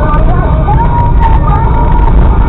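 Vehicle cab noise from driving, a steady deep rumble, with the radio playing a song with singing over it.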